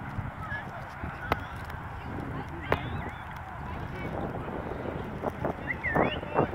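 Open-air ambience at a youth soccer field: steady wind noise on the microphone with faint distant voices and a few short high calls. Two sharp knocks about a second and a half apart cut through it.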